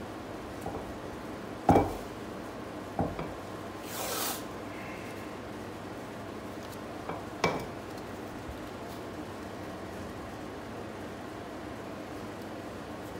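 Blue painter's tape being unrolled and wound around a knife: a short rip of tape pulling off the roll about four seconds in, and three sharp knocks of the roll and knife against the wooden bench.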